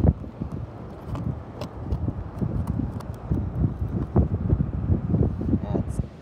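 A knife cutting through the rubbery bell of a dead cannonball jellyfish on a plastic cooler lid: irregular low thumps and scrapes, with a sharp knock at the start. Wind buffets the microphone throughout.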